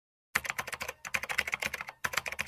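Computer keyboard typing sound effect: a quick run of key clicks, roughly eight to ten a second, starting about a third of a second in, with a brief pause near the middle.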